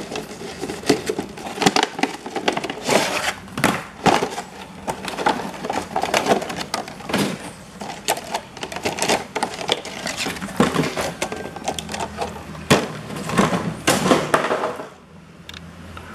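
Cardboard box and clear plastic packaging being opened and handled: dense, irregular crinkling, rustling and clicking of stiff plastic, dying down shortly before the end.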